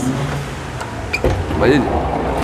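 Brief speech over a steady low hum, with a light click just over a second in.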